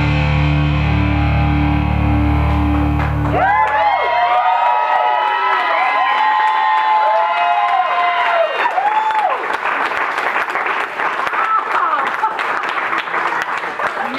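Distorted rock guitar music playing over a venue's speakers, cutting off about three and a half seconds in. An audience then cheers with rising and falling shouts, which give way to applause near the middle.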